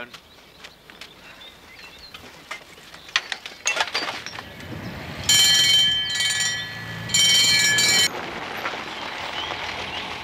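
An electric bell rings in two bursts, the first about a second and a half long and the second about a second, with a short pause between them. A few faint knocks come before it.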